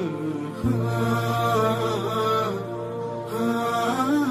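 Background music: a wavering, chant-like vocal line over a steady low drone that comes in about half a second in.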